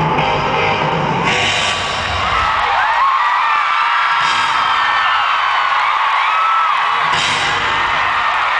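Live arena concert heard from within the audience: loud band music whose bass drops away about two and a half seconds in, leaving the crowd's high-pitched screams and whoops over the band. A short hissing burst comes about every three seconds.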